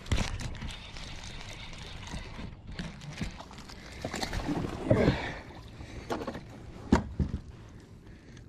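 A hooked fish splashing at the water's surface beside a kayak while it is reeled in, loudest about four to five seconds in. A couple of sharp knocks follow about seven seconds in, as the fish is brought aboard.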